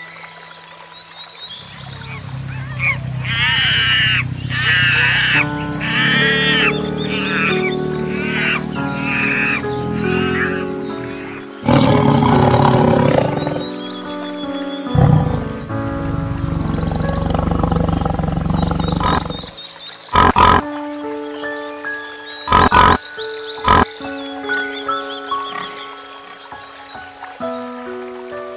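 Background music with animal calls over it. In the first ten seconds there is a run of about six high, arching calls. A tiger then growls and roars loudly for several seconds in the middle, and a few short, sharp sounds follow near the end.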